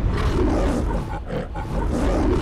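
The MGM logo lion roaring, loud and long, with a brief dip about one and a half seconds in.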